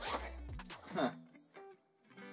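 Backpack zipper pulled in two quick runs, one at the start and one about a second in, over background music.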